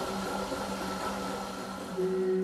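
Sous vide immersion circulator running in its water bath: a steady hum with a faint higher tone.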